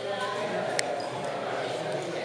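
Indistinct chatter of several people talking at once, with a single sharp click a little under a second in.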